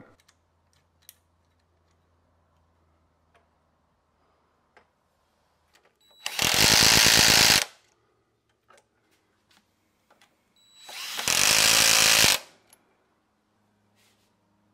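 Electric driver driving stainless steel screws into locking nuts on a workbench caster bracket: two runs of about a second and a half each, several seconds apart, with a few faint clicks of handling between them.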